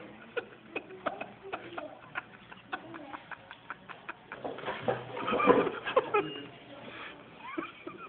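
A man's rough, snorting and spluttering nose-and-throat noises after snorting a line of Big Mac sauce, loudest in a harsh outburst about halfway through, over rapid clicking handling noise.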